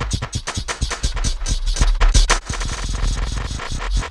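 Logic Pro's Alchemy synth in granular mode playing a chopped-up drum beat loop: a dense, uneven stream of rapid clicky grains, their size and density swept by two slow LFOs. The clicks smooth into a steadier low hum a little past halfway.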